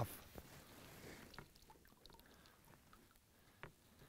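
Near silence, with a few faint small clicks and one slightly louder tick about three and a half seconds in.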